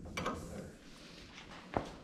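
Faint scrapes and light metal clicks of a hand tool working at the universal joint of a race car's collapsible steering shaft, with one sharper click near the end.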